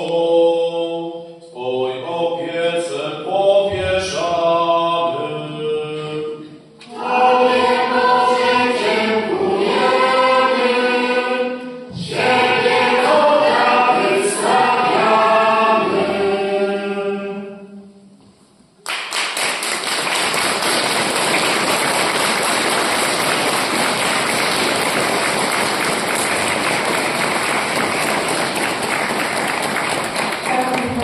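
Children's choir singing a song in a reverberant church, the song ending about eighteen seconds in. Audience applause then starts suddenly and holds steady to the end.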